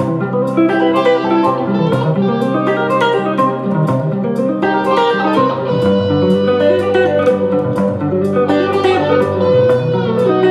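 Electric guitar playing rapid seventh arpeggios as a shimmering background texture over a looped guitar part of chords and melody, moving through the progression G major, B major, C major, C minor.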